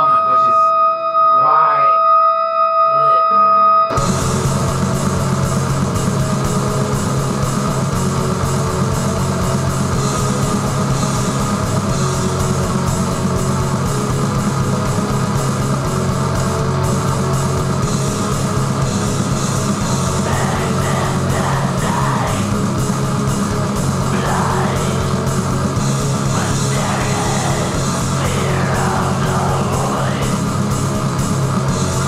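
Atmospheric black metal: a spoken-word voice over two held tones ends, and about four seconds in the full band crashes in with distorted guitars and drums as a dense, unbroken wall of sound at a steady level.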